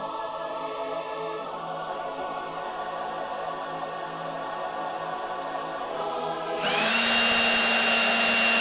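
A held choir chord sung on an open vowel. About seven seconds in, a hair dryer switches on: its whine rises quickly and then runs loud and steady with a rush of air.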